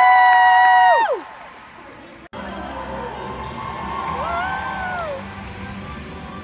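A loud, high whoop from the crowd, rising at the start and falling away after about a second. After an abrupt cut about two seconds in, music plays over a crowd background.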